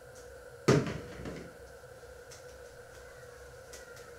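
A single loud knock or bang about three-quarters of a second in, ringing briefly, over a steady background hum.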